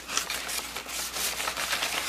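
Sheets of paper prints rustling and crackling as a stack is shuffled through by hand and set down.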